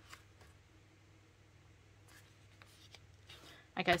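Faint rustle of paper pages being turned and handled in a planner, with a few light ticks, over a low steady hum.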